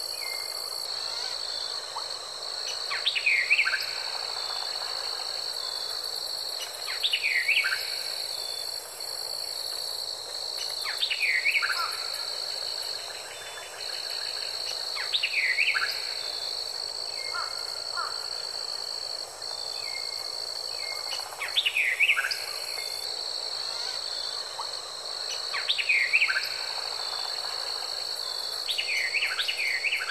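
Nature ambience: a steady high insect trill, with a bird calling over it in a burst of quick falling chirps about every four seconds.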